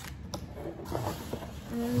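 Light handling noises of a small plastic paint pack and the kit's packaging being moved about, with a short click about a third of a second in.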